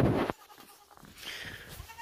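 A short burst of low rumbling noise on the microphone that cuts off suddenly about a third of a second in, then a faint young goat's bleat near the end.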